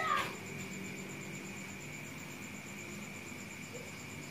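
A single short animal call that falls in pitch, right at the start, over a steady high chirring of insects.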